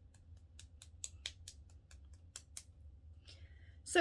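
EFT tapping: fingertips tapping lightly and quickly on the wrist, about five faint taps a second, stopping a little before three seconds in.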